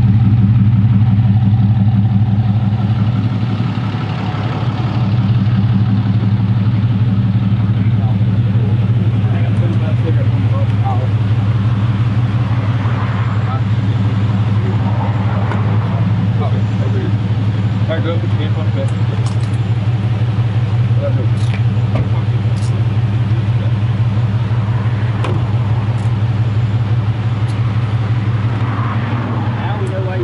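A vehicle engine idling steadily close by: an even low hum that holds the whole time.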